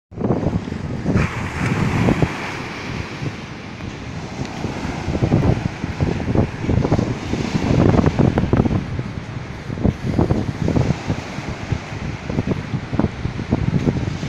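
Heavy ocean swell breaking into surf and washing up the beach, mixed with strong gusts of wind buffeting the microphone.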